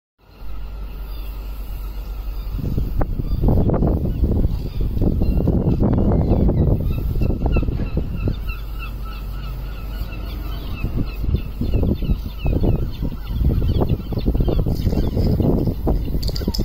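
Outdoor street ambience: an uneven, gusting low rumble with a run of short, repeated bird calls over it in the first half.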